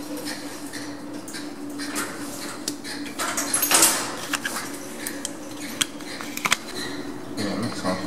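Lift car running in its shaft, heard from on top of the car: a steady hum with scattered metallic clicks and clanks, the loudest a rattling clatter about halfway through.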